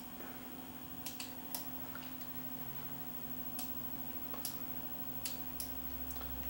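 Computer mouse clicking: about eight short, sharp clicks at irregular intervals over a faint steady hum.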